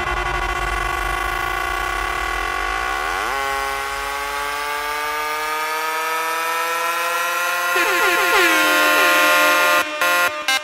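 Electronic music: a sustained, horn-like synthesizer chord held through, its notes sliding down in pitch a little after three seconds and again near eight seconds. The deep bass underneath fades away about halfway through.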